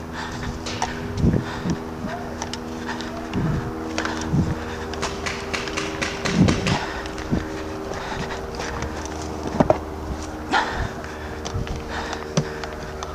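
Footsteps on grass and dirt, with gear knocking and rattling as a paintball player walks, over a steady low hum of several held tones. Sharp clicks come scattered through it, most of them in the middle.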